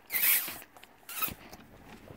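Two short rasping slurps through a drinking straw in a fast-food cup, the second shorter, about a second apart.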